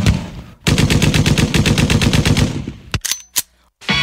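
Rapid machine-gun fire sound effect dropped into a hip hop mix, about ten shots a second for roughly two seconds and fading toward the end. Two short sharp clicks follow, then a brief gap before the next beat comes in.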